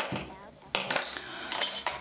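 Small hard makeup products clinking and clattering as they are handled on the table, with a sharp click at the start and another a little under a second in.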